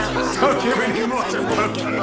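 Indistinct chatter of many voices in a bar, with music playing underneath.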